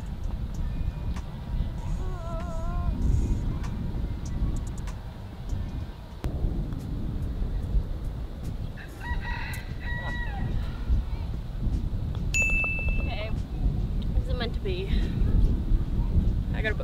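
Wind rumbling on the microphone, with a rooster crowing twice in the distance in wavering calls. About twelve seconds in, a putter strikes a golf ball with a sharp, ringing click.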